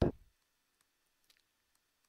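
A few faint, short clicks of a stylus tapping and writing on a tablet screen, after the tail of a spoken word right at the start.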